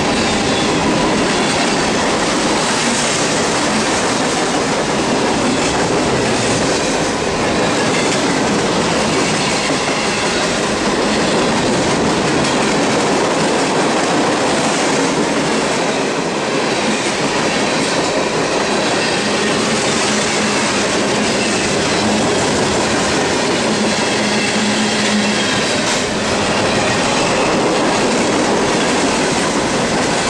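Freight train cars rolling past at close range: a steady, loud rumble of steel wheels on rail, clacking over the rail joints.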